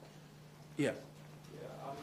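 Speech: a man says "yeah" once, close and loud, then a quieter voice starts speaking. A steady low hum runs underneath.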